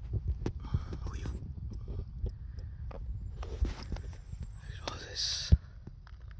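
A person whispering in short phrases over a steady low rumble on the microphone, with one sharp click near the end.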